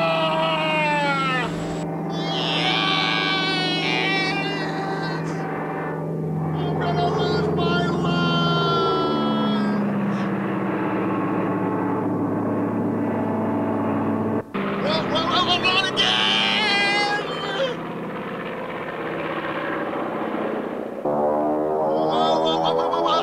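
A man's voice yelling and crying out with gliding pitch over a steady low drone.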